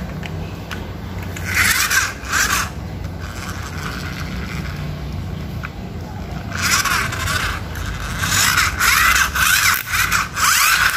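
Plastic toy cars pushed by hand across a tiled surface: bursts of scraping and squeaking from the wheels and bodies, about two seconds in and again from about seven seconds on, over a steady low hum.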